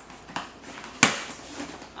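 Cardboard packaging being handled and opened: light rustling, with a small click and then a sharp snap about a second in.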